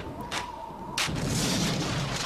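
Artillery field gun firing: a couple of sharp cracks, then a heavy report about a second in that trails off into a lingering rumble.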